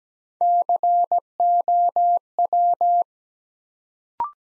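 Morse code tone at 17 words per minute sending the word COW: dah-dit-dah-dit, dah-dah-dah, dit-dah-dah. It is a single steady beep keyed on and off in long and short elements, lasting about two and a half seconds.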